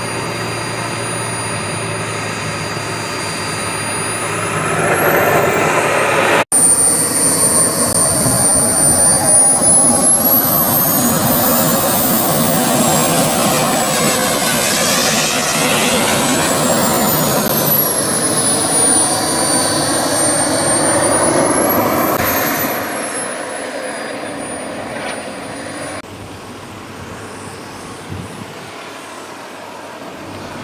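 Small gas-turbine engine of an RC model Viper jet running with a high whine. About four to five seconds in it spools up and gets louder. The whine then climbs higher and falls back as the jet taxis close past, and it turns quieter after about 22 seconds, with a momentary dropout in the sound a little past six seconds.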